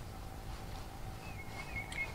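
Quiet outdoor background with a low rumble, and a short, faint, wavering bird call in the second half.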